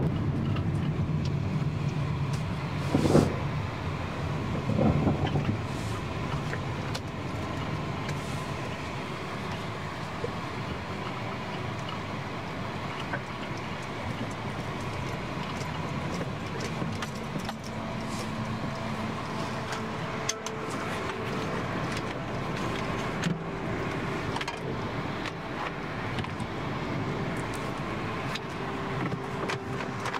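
Road and engine noise heard inside a moving car's cabin, a steady rumble and hiss, with two brief louder bumps about three and five seconds in.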